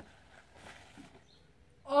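Faint rustling of a paper gift bag as a hand reaches inside, then near the end a man's loud exclamation, "Ach, nee!"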